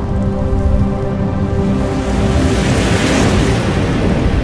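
Logo-animation sound effect: a loud sustained drone of several held tones over a deep rumble, with a hissy whoosh that swells and peaks about three seconds in.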